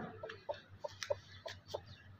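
Broody golden hen giving a quiet run of short clucks, about seven in two seconds, as she settles onto a clutch of eggs.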